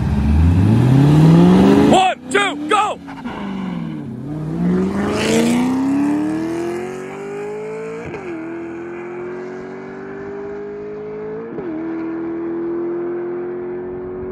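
A cammed 4.6-litre three-valve Mustang GT V8 and a Porsche 911 flat-six launching hard from a standstill and accelerating away. The engine pitch climbs steeply, dips at each gear change (a few seconds in, and twice more later on), then climbs again. The sound grows fainter as the cars pull away.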